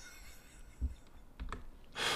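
A few faint clicks of a computer keyboard, with a soft low thump a little before the middle, in an otherwise quiet room.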